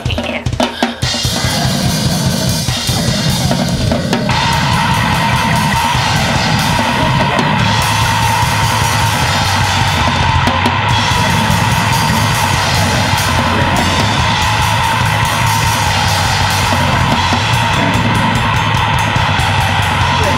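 Grindcore band recording: drums lead in, and within about a second distorted guitar and bass join. The band plays fast and dense, and the sound thickens again a few seconds in.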